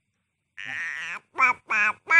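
A baby starting to cry: a breathy fussing sound, then two short, bending wails.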